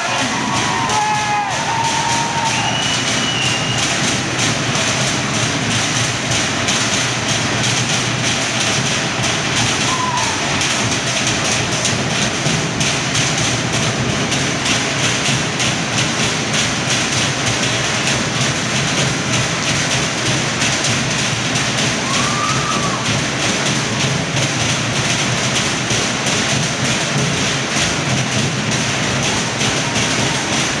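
Fast, steady drumming on Samoan wooden log drums, an unbroken run of rapid strokes. A few brief rising-and-falling calls sound over it at long intervals.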